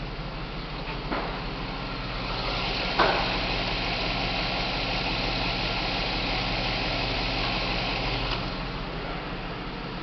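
2005 Cadillac Escalade's 6.0-litre V8 idling steadily under the open hood, with a sharp click about three seconds in. Between about two and a half and eight seconds in the idle is louder and hissier, as the engine bay and its belt drive are heard up close.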